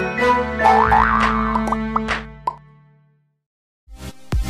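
Playful cartoon intro jingle: sustained notes with springy rising pitch glides and a few short pops, fading out about two and a half seconds in, followed by a brief silence.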